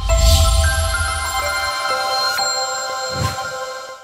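Short electronic logo jingle from a TV news channel. It opens with a deep bass hit, then bright synthesized chime tones ring on in a held chord, with a brief swish about three seconds in and a fade-out at the end.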